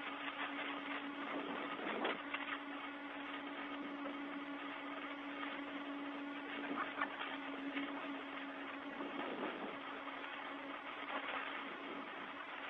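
Open space-to-ground radio channel hissing steadily, with a low hum and a few brief clicks.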